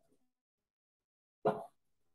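Near silence, then about one and a half seconds in a woman makes one short vocal sound with a sharp start, a brief non-word utterance.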